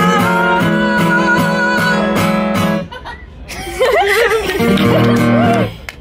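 Acoustic guitar strummed in a steady rhythm under a held sung note, the song ending suddenly about three seconds in; then shouts and cheers from the audience.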